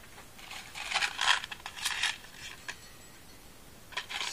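A packet of jelly beans being handled: several short rustling bursts in the first half, as beans are picked out.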